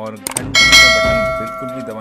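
A single bell ding sound effect: a couple of quick clicks, then one bright bell strike about half a second in that rings on and fades over about a second and a half.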